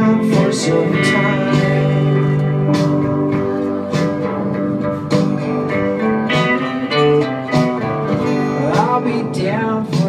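Acoustic guitar played through a song, with chords and notes changing steadily and no breaks.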